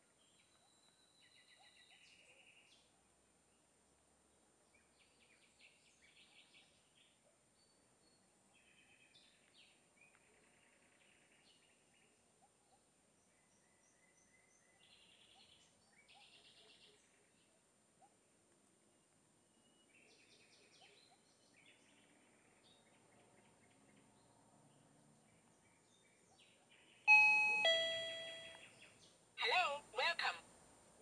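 Faint, scattered bird chirps, then about 27 seconds in a loud electronic two-note ding-dong chime, falling from the higher note to the lower and ringing away over about two seconds. Two short bursts of sound follow just before the end.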